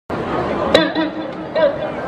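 Audience voices chattering and calling out over each other, with a single sharp knock just under a second in.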